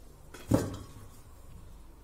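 A single short knock of kitchen utensils about half a second in, while a cauliflower is cut into florets with a kitchen knife; the rest is faint room tone.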